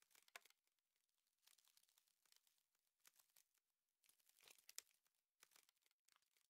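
Near silence, with faint, scattered crackles at irregular moments.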